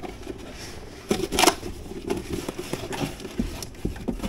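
Hands rummaging in a cardboard shipping box: irregular rustling and scraping of cardboard and packing wrap with a few small knocks, loudest in a short rustle about a second and a half in.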